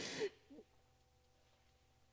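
A woman's sob at the start: a sharp breathy gasp carrying a short voiced whimper, then a second brief whimper about half a second in. Faint room tone with a steady low hum for the rest.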